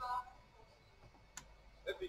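A short pause in a man's speech, broken by a single sharp click a little over a second in, before the voice starts again near the end.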